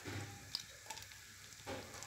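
Faint sizzling of sliced dry fruits frying in hot ghee in a metal pot, with a few small crackles.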